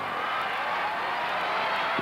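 Stadium crowd cheering, a steady roar of many voices.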